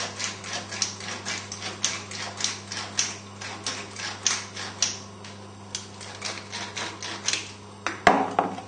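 Hand-twisted pepper mill grinding peppercorns: a long run of sharp clicks, about three or four a second, that stops shortly before the end.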